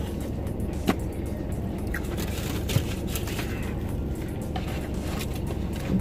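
Steady low hum inside a car's cabin, with faint background music and a couple of small sharp clicks, one about a second in and one near the middle.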